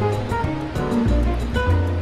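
Instrumental Brazilian jazz with a bass line, short melodic notes and a steady light percussion tick, about six a second.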